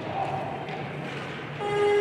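Competition hall noise from the crowd and platform during a clean and jerk; about one and a half seconds in, a steady electronic buzzer tone starts as the lifter holds the barbell overhead, the referees' down signal for a completed lift.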